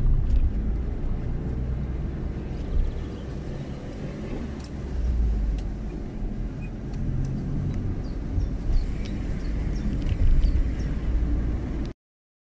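Steady road noise inside a moving car's cabin: low engine and tyre rumble while driving at road speed. It cuts off abruptly just before the end.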